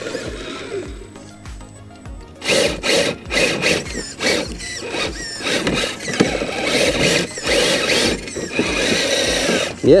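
RC rock crawler's 20-turn 550 brushed motor and drivetrain whining under heavy load in uneven bursts as the truck claws up a steep rock stack, starting about two and a half seconds in.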